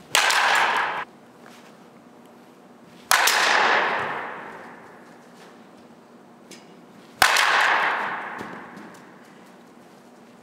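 Softball bat hitting a softball three times, about three and four seconds apart, each hit ringing out in a long echo through the large indoor practice hall; the first echo cuts off suddenly after about a second.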